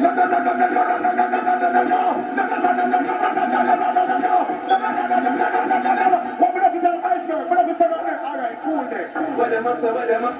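A continuous din of many overlapping voices with no clear words, running without a pause.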